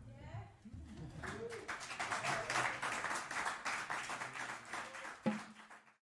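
Audience applauding as a piano trio's tune ends, with a few voices among the clapping. A single sharp knock comes near the end, then the sound cuts off abruptly.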